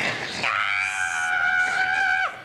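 A child's voice holding one long, high scream at a steady pitch, starting about half a second in.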